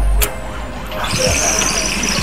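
Bamboo water pipe (điếu cày) gurgling as tobacco smoke is drawn hard through the water, a steady rattling hiss that starts about halfway in.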